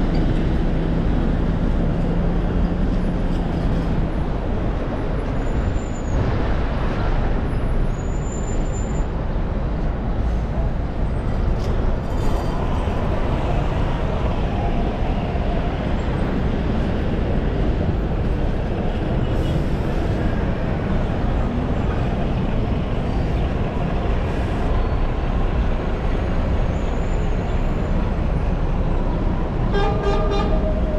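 Steady, loud city road traffic, with buses and cars driving past. A low engine hum runs through the first few seconds, and two brief high squeals come about 7 and 9 seconds in.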